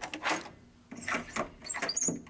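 A hotel room door's bolt being worked: clicks and rattles of the lock hardware, ending in a couple of sharp metallic clinks.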